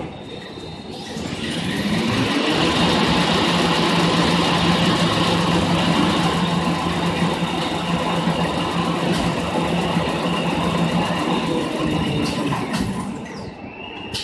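Automatic toilet paper rewinding machine speeding up with a rising whine about a second in, running steadily at speed, then slowing with a falling whine near the end.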